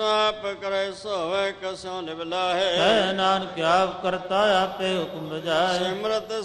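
A man chanting Gurbani, Sikh scripture, as melodic recitation, his voice bending up and down in long drawn-out phrases.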